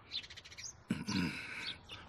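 Birds chirping in the background, with a short, louder sound about a second in.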